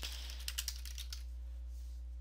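Computer keyboard keys clicking in a quick run of keystrokes as a word is typed, stopping a little over a second in; a steady low hum runs underneath.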